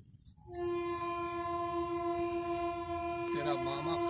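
A long, steady horn blast at a single pitch starts about half a second in and holds without a break. A man's voice begins over it near the end.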